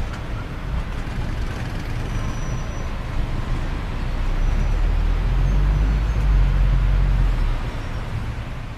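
Steady low rumble of a moving public-transport vehicle heard from inside the passenger cabin, growing louder for a few seconds in the second half.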